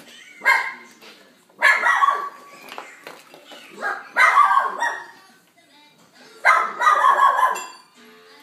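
A pet dog barking in four short bouts with pauses between them.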